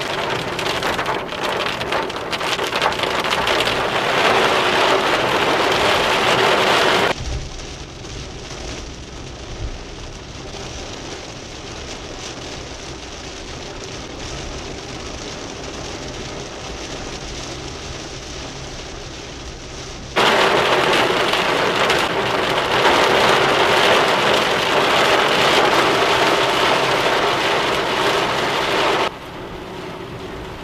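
Heavy rain drumming steadily on a car's roof and windscreen. About seven seconds in, the sound cuts to a quieter, duller recording of road and rain noise in the moving car; the loud rain returns about twenty seconds in and cuts off again just before the end.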